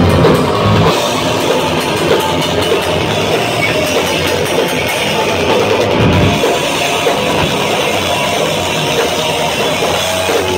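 Live heavy metal band playing loud, with distorted electric guitars and a pounding drum kit, in an instrumental passage without singing.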